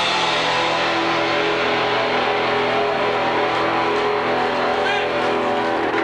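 Punk rock band playing live, loud and distorted, with electric guitars holding long sustained notes.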